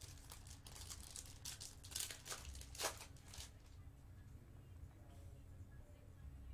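Foil wrapper of a trading-card pack being torn open and crinkled in the hands. It is a faint run of crackles, loudest about two to three seconds in, that dies down a little past halfway.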